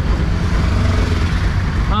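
Auto-rickshaw engine running, heard from inside the open cab: a steady low rumble.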